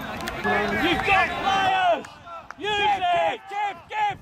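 Men shouting on a rugby field: loud, high-pitched calls overlapping for about two seconds, a brief lull, then a few shorter shouts near the end.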